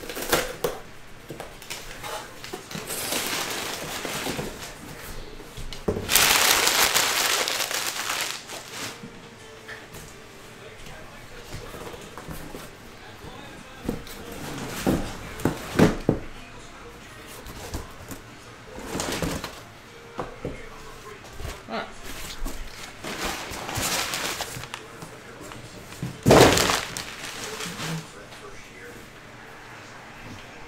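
A cardboard shipping case being opened and its shrink-wrapped hobby boxes unpacked by hand: rustling and scraping of cardboard, with a loud scrape lasting about two seconds around six seconds in. Knocks follow as the boxes are set down, the loudest near the end.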